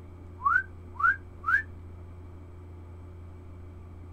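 Short rising whistled notes, three in quick succession about half a second apart, stopping under two seconds in, over a steady low hum.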